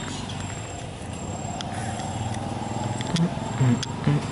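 A motor running steadily with a low, even hum. A few sharp clicks come late on, along with short low blips near the end.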